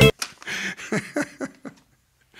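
A man chuckling softly into a close vocal microphone, in a string of short breathy pulses that die away near the end.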